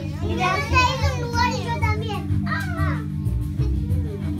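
Young children's voices chattering over background music with steady low bass notes.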